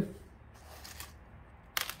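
Small white decorative pebbles on a potted seedling's soil rustling and clicking faintly as fingers scoop them up. A brief, louder rattle comes near the end.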